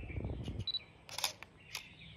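Canon DSLR firing in live view: a short high autofocus-confirmation beep, then about half a second later the shutter goes off, with a second click about half a second after that.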